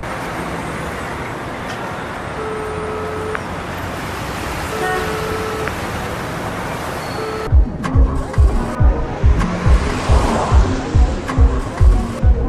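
Steady road-traffic noise from a busy highway, with a few short car-horn toots. About seven and a half seconds in, a song's beat comes in over it: deep kick-drum thumps about twice a second, with other music.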